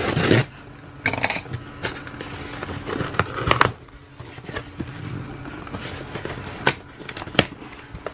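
A cardboard shipping box being opened by hand: a box cutter slitting the packing tape, then the cardboard flaps scraping and rustling as they are pulled apart, with a burst of louder scraping around the middle and a couple of sharp clicks near the end.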